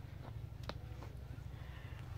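Footsteps on rock: a few sharp knocks and scuffs of shoes on boulders, over a steady low rumble.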